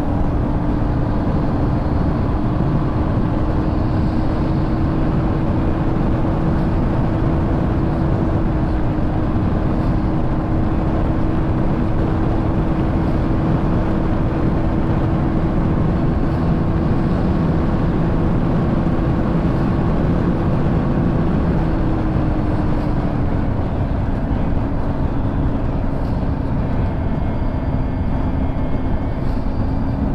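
Husqvarna Svartpilen single-cylinder motorcycle cruising at a steady speed on the highway, its engine holding one steady note under heavy wind rush on the microphone. The engine note drops slightly about two-thirds of the way through as the throttle eases.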